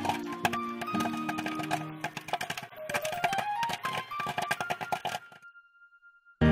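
Cartoon popcorn-popping sound effects, a fast, irregular patter of pops over a light children's music tune with a short run of rising notes; it all cuts off suddenly near the end, leaving one faint held tone.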